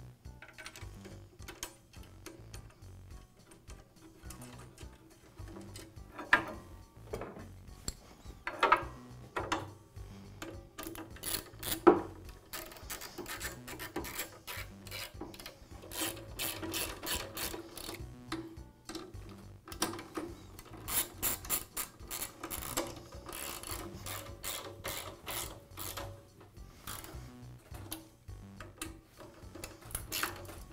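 A hand screwdriver ratcheting in runs of fast, even clicks as screws are driven to fasten the vise's rear block to a chop saw base. It is preceded by a few knocks of parts and tool being handled, the sharpest about twelve seconds in.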